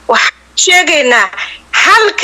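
Speech: a voice talking in short phrases, with brief pauses near the start and around the middle.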